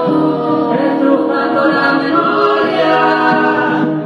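Several voices singing long held notes together in harmony, with no clear words, the chord shifting every second or so.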